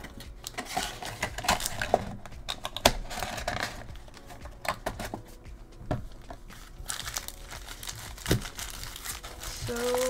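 Foil-wrapped trading card packs crinkling and clicking as they are handled and stacked, in an irregular run of rustles and sharp little taps.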